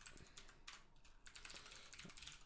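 Faint typing on a computer keyboard: quick runs of key clicks as text is entered.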